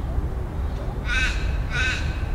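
A crow cawing twice, two short harsh calls about half a second apart, starting about a second in.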